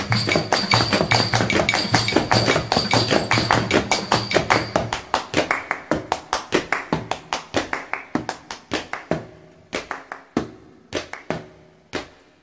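A small percussion ensemble plays a fast, dense rhythm of drum and tambourine strokes, hand claps and shoe taps on a wooden floor. The parts drop out one by one, and the texture thins until only sparse, separate taps remain in the last few seconds.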